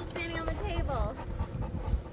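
Cane Corso panting, with short pitched vocal sounds in the first second.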